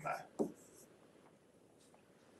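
The end of a man's spoken word and one brief soft sound about half a second in, then near silence: room tone.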